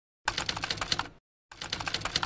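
Typing sound effect: two runs of rapid key clicks, the first starting a quarter second in and the second about one and a half seconds in, with dead silence between them.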